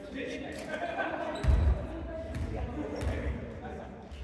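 A basketball bouncing on a hardwood gymnasium floor during play, a few bounces with the loudest about a second and a half in, echoing in the large hall, over players' voices.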